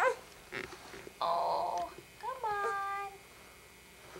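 Baby making a few short, high-pitched squealing and whining cries while lying on her stomach.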